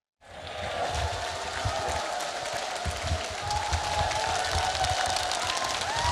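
A large audience applauding, a hall full of people clapping, fading in just after the start and holding steady.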